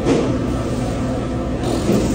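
Steady low rumble of background noise, with a short knock right at the start.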